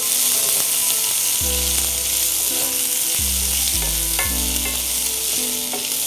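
Sliced onions, garlic and ginger with fennel and cumin sizzling steadily in hot oil in a cast-iron pan, stirred with a wooden spatula. Soft background music with a bass line comes in about a second and a half in.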